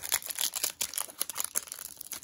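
Foil trading card pack wrapper crinkling and tearing as it is opened by hand, a rapid run of sharp crackles.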